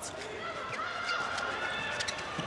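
Indoor arena sound of a handball game in play: steady crowd noise from the stands, with faint, high, wavering squeaks from players' shoes on the court in the middle.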